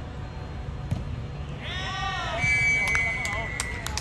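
Players shouting in celebration as a goal goes in, followed by a long, steady referee's whistle blast. Sharp slaps of hand claps and high-fives come near the end.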